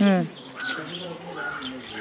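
Birds chirping in the background, with two short high chirps in the second half of the first second and again around a second and a half in.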